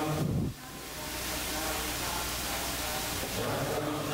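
A voice chanting a Sanskrit verse in slow, melodic recitation. The sung line breaks off about half a second in, leaving a steady hiss, and the chanting starts again near the end.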